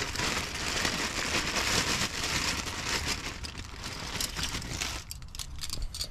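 Hand rummaging in a cardboard box of plastic-wrapped parts: steady crinkling and rustling of plastic and cardboard. Near the end it thins out to a few light metal clinks as a ratchet strap is pulled out.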